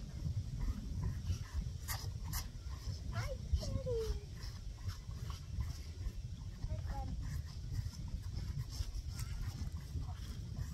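Wind rumbling on the microphone over calves sucking and slurping at milk feeding bottles, with short wet smacks and a brief squeak about four seconds in.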